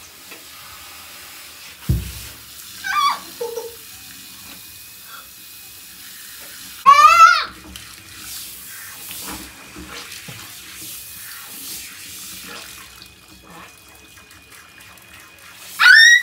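Water running steadily from a handheld shower hose in a bathtub, with a girl's loud, wavering cry about seven seconds in and shorter cries near three seconds and at the very end. A single low thump comes about two seconds in.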